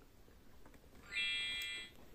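VTech Rhyme & Discover Book's electronic speaker giving a short, loud, steady buzzy beep, under a second long, starting a little after a second in, as the book's cover is opened.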